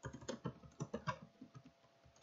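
Typing on a computer keyboard: a fairly quiet run of quick, irregular key clicks, about five to six a second.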